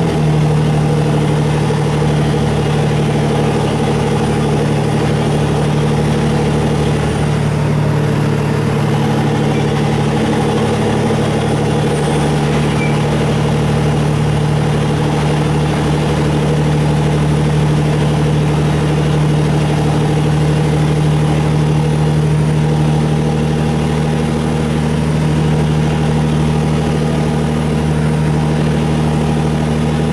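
Rear-mounted diesel engine of a LiAZ 6213.20 articulated city bus heard from inside the passenger cabin, running at a steady pitch with an even low drone.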